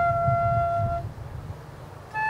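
Solo flute holding one long, steady note that ends about a second in, followed by a short pause in the playing with only a low rumble underneath.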